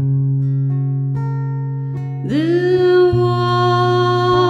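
Steel-string acoustic guitar: a plucked chord rings out and slowly fades. About two seconds in, a woman's voice comes in over it, singing one long held note with a slight waver.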